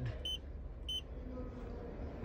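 Two short, high-pitched electronic confirmation beeps about two-thirds of a second apart, from button presses on the climate controls, over a faint steady hum.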